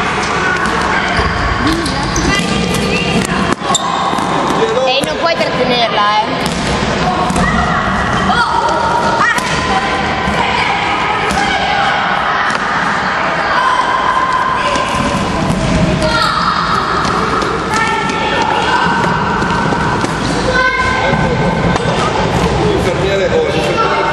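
Balls bouncing on a wooden sports-hall floor amid the overlapping shouts and chatter of a group of children, echoing in the large hall.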